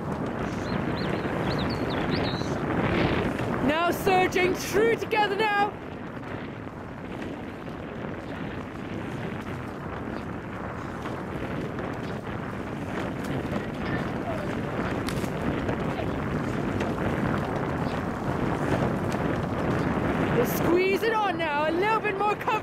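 Wind buffeting the microphone throughout, with short shouted calls about three to six seconds in and again near the end.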